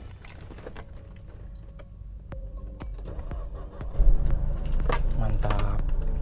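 Car keys jangling and clicking at the ignition of a 1995 Mercedes-Benz C180 (W202), with a few small clicks. About four seconds in, a louder steady low rumble begins.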